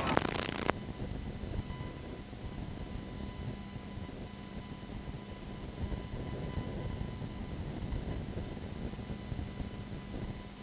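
Home-video tape playback noise where the recording ends: a brief burst of noise at the cut, then a steady low rumble with a faint hum and hiss from the videotape.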